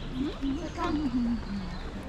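Speech: people talking nearby as they walk along a garden path, the words unclear.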